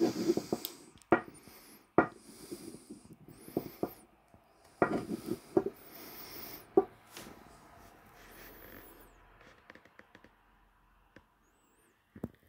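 Handling noise from a glass perfume bottle and its packaging being moved about by hand: irregular clicks and light knocks with brief rustles, busiest in the first half and fading out over the last couple of seconds.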